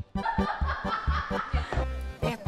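A girl laughing behind her hand, muffled and breathy, over background music with a steady beat of about four pulses a second.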